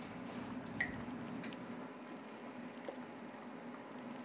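Liquid egg whites poured slowly from a plastic measuring cup into a paper baking box of chopped vegetables, a faint wet trickle with a few small clicks.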